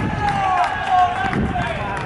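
Footballers' voices calling out across the pitch in short shouted calls, with a few faint knocks in the background.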